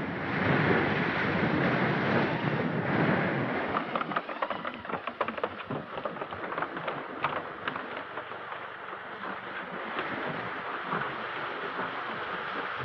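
Steady rush of stormy wind and rain on an old film soundtrack. It eases after about four seconds, when scattered knocks and clatter set in.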